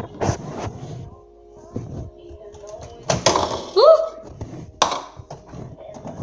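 Knocks and clunks of a microwave door being opened and a plate being handled into it, with a child's short rising vocal sound about two-thirds of the way through.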